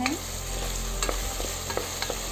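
Chopped tomatoes frying in hot oil in a pressure cooker as a wooden spoon stirs them, with a few light clicks of the spoon against the pot about a second in and near the end.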